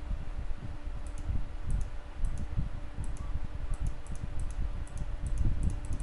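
Computer mouse clicking: about a dozen quick clicks, each a press-and-release double tick, starting about a second in, as vertices of a cutline are placed in the mapping software. A low rumble runs under the clicks.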